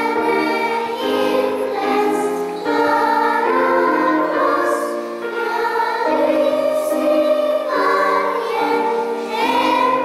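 Children's choir singing a melody together, moving from one held note to the next.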